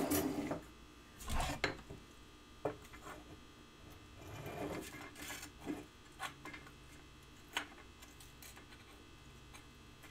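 Things being moved on a jeweler's bench as a honeycomb soldering board is set in place: scattered taps, clicks and scrapes, fewer after about eight seconds, over a low steady hum.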